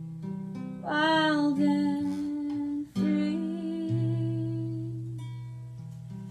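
Acoustic guitar playing a slow chord accompaniment while a woman sings long held notes over it, the first swooping up into pitch about a second in, the second starting around three seconds in.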